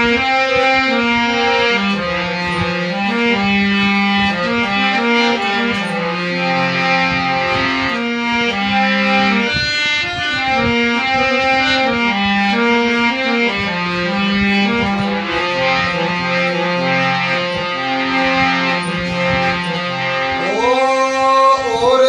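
Harmonium played as a solo interlude: a melody of held, stepping reed notes over a sustained lower drone. A man's voice starts singing near the end.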